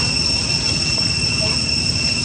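A steady, high-pitched insect drone that holds one pitch without a break, over a low background rumble.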